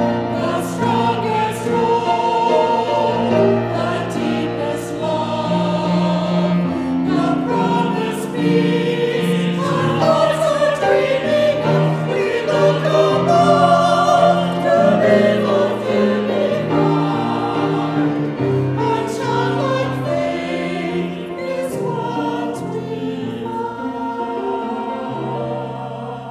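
Small mixed church choir of women's and men's voices singing together in sustained phrases.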